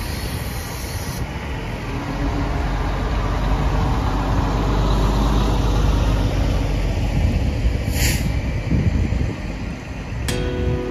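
Motorhomes and tow vehicles drive past on wet pavement: a large Class A motorhome's engine rumbles and its tyres hiss on the water, building louder toward the middle as a Class C motorhome and an SUV towing a travel trailer follow. A short burst of air hiss comes about eight seconds in.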